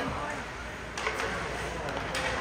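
Ice hockey game on the rink: an even wash of arena noise from skates and play on the ice, with a sharp clack about a second in and another near the end, and faint voices.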